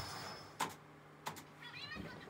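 Two sharp clicks at the studio computer's keyboard, a little over half a second apart, then a brief wavering high-pitched squeak near the end.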